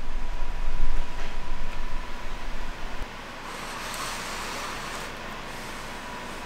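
Microphone handling noise from a handheld camera being moved about: a loud low rumbling that stops suddenly about three seconds in, leaving a quieter steady hiss.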